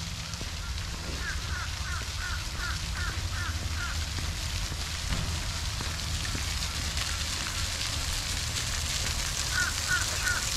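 Splash-pad fountain jet spraying and splashing onto concrete, a steady hiss that grows louder toward the end. A bird calls in a run of short repeated notes, about three a second, from about one to four seconds in and again near the end, over a low rumble.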